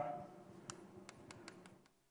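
A handful of faint, light, sharp taps, five or six spread over about a second, against quiet room noise.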